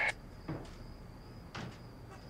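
Faint, steady high-pitched cricket chirring as background ambience, with two soft knocks about half a second and a second and a half in.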